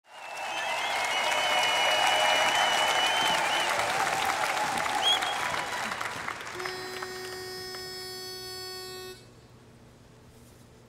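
Audience applause with whistles and cheers for about six seconds, fading into a sustained musical chord with bright chime strikes that cuts off abruptly about nine seconds in.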